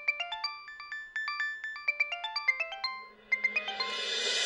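Mobile phone ringtone: a fast melody of short electronic beeps jumping up and down in pitch, with a brief gap about three seconds in before it starts again. A rising wash of hissing sound swells in near the end.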